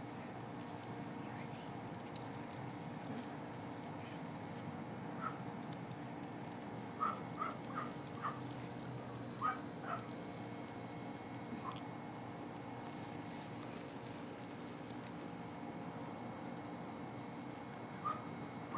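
Urine stream splashing against a wall and onto leaves, faint over a steady background hum, with the stream starting partway through.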